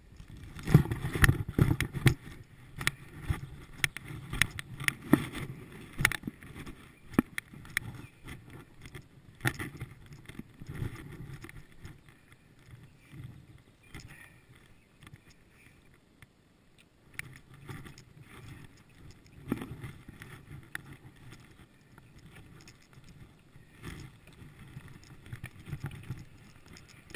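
Bicycle rolling over a rough dirt forest trail: tyre rumble with frequent rattles and knocks as the bike jolts over bumps. It is busiest in roughly the first ten seconds, quieter in the middle, and picks up again toward the end.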